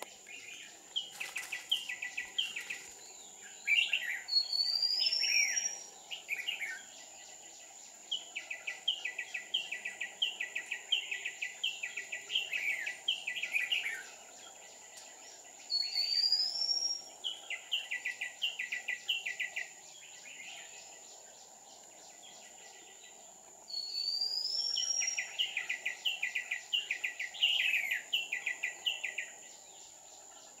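Red-whiskered bulbul singing in several bouts with pauses between them: rising whistles and quick runs of short, repeated notes.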